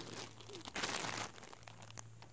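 Faint crinkling of a clear plastic poly bag as the bagged shirt inside is picked up and handled, a little louder for about half a second in the middle.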